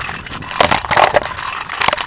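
Scooter wheels rolling fast down a concrete path, a steady rattling clatter with sharper knocks bunched about half a second in and again near the end.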